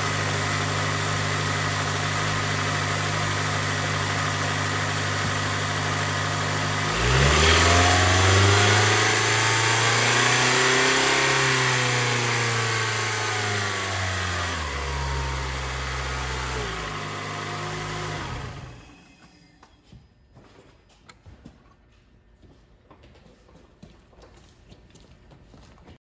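A 2006 Acura TSX's 2.4-litre i-VTEC DOHC four-cylinder engine, running nice and strong, idling steadily, then revved up and back down in one slow rise and fall over about ten seconds. It settles back to idle and stops about eighteen seconds in, leaving only faint ticking.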